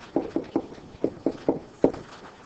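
A pen stylus tapping against a writing surface while handwriting, with about seven short, irregular taps.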